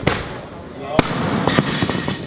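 Barbells loaded with rubber bumper plates dropped onto wooden lifting platforms: a sharp bang at the start and another about a second in, then a few lighter knocks, with the chatter of a busy training hall underneath.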